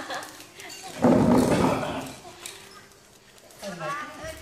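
Plastic toy maraca shaken in one loud, rattling burst lasting about a second, starting about a second in. Voices are heard around it at the start and near the end.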